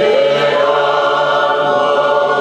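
A group of voices singing a hymn unaccompanied in harmony, holding long notes, with a shift to a new chord just after the start.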